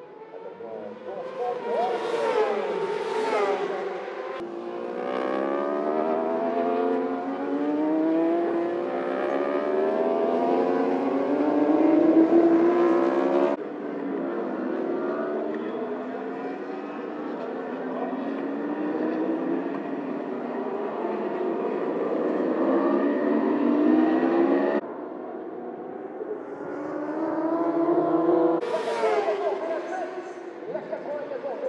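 Racing superbike engines revving high and climbing through the gears, pitch rising and falling with each shift, with bikes passing close by about two seconds in and again near the end. The sound jumps abruptly at several edits between shots.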